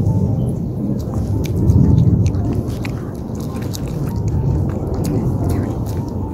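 A Pomeranian chewing and biting a treat, with many short crunching clicks, over a loud low rumble.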